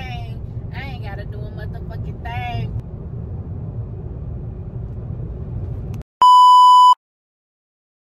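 Steady low road rumble inside a moving car's cabin, with a few brief bits of voice in the first three seconds, cutting off suddenly after about six seconds. Then a single loud, steady electronic beep lasting under a second, followed by silence.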